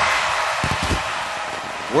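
A crowd cheering and shouting, with a few low thumps under it about halfway through.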